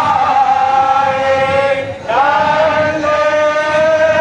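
A group of temple priests chanting in unison, holding long, steady notes; one phrase ends and the next begins about two seconds in.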